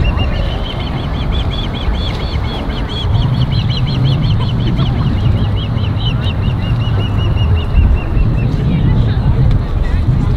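A bird calling a long run of quick, evenly repeated chirps, about four a second, turning softer and quicker near the end before stopping, over a low wind rumble on the microphone.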